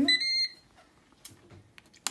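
Ninja dual-zone air fryer's control panel giving a single high electronic beep, about half a second long, as the power button is pressed and the unit switches on.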